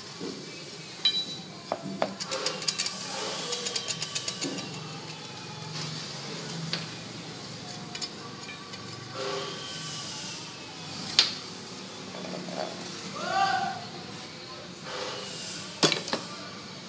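Metal clinking and tapping as the aluminium and steel rods are handled and touched with a metal tool: a quick run of light taps, then a sharp knock and another near the end, with faint voices.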